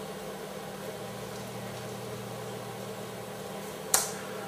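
Quiet room tone: a steady low electrical hum over faint hiss, with a single sharp click near the end.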